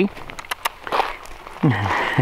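A man's brief voice: a short "eh?" at the start and a low falling grunt or chuckle near the end. In between come a few light clicks and crunches of steps and handling on gravel.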